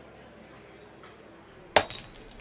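A glass bottle hitting the ground near the end: one sharp ringing clink, followed by a few smaller clinks as it settles.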